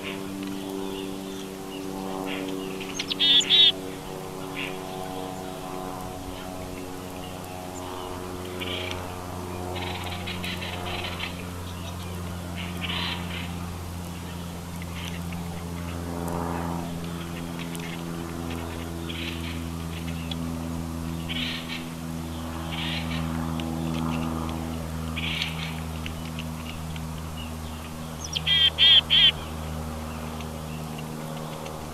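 Wild birds calling over soft background music with slowly changing sustained chords. Two loud bursts of quickly repeated high calls come about three seconds in and again near the end, with fainter single calls in between.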